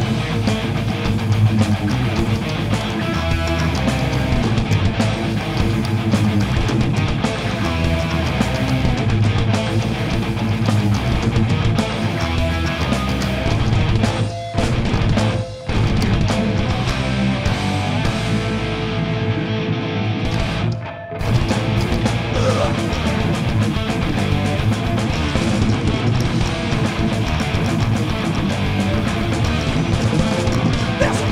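Live heavy metal band playing: distorted electric guitars, electric bass and drum kit. The whole band stops briefly three times in the middle, twice close together and once more about five seconds later.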